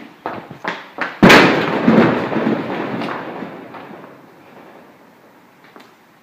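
Quick footsteps on a hard floor, then a little over a second in a loud crash against a corrugated sheet-metal storage-unit wall, which rumbles away over about three seconds.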